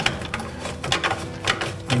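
Black plastic P-trap and drain pipe pieces clicking and knocking against each other in a quick, irregular run as they are handled and pushed together for a dry fit.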